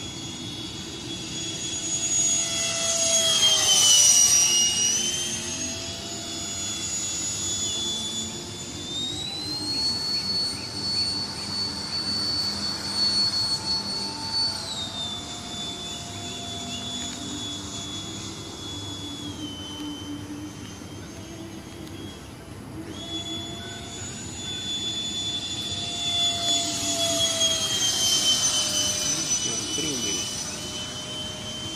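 70 mm electric ducted fan of a radio-controlled MiG-15 model jet in flight: a high, steady whine that grows louder and drops in pitch as the model passes close at about four seconds and again near the end. The pitch steps up around ten seconds as the throttle opens, falls back around fifteen seconds, and the whine cuts out for a moment a little after twenty-two seconds.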